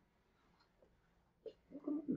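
Near silence, only faint room tone, broken by a single short click about one and a half seconds in, then a voice starting quietly just before the end.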